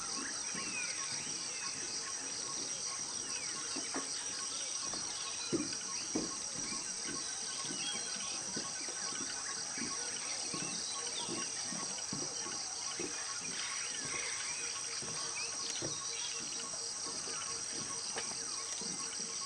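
Steady high-pitched chorus of tropical forest insects, crickets among them, with many short bird calls and chirps over it and two brief soft knocks around the middle.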